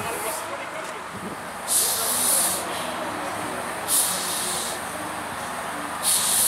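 Steam tank locomotive moving slowly, with loud hissing bursts of steam roughly every two seconds over a low steady rumble.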